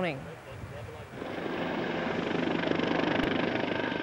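Police helicopter's rotor and engine, growing steadily louder from about a second in, with the fast, even beat of the rotor blades.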